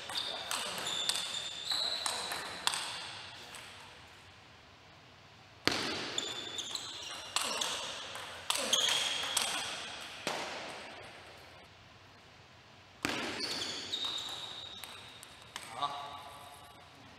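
Table tennis rallies: quick, sharp clicks of the ball off rackets and table, mixed with high squeaks of players' shoes on the court floor, echoing in a large hall. There are three rallies; the second and third start abruptly about six and thirteen seconds in, with short lulls between.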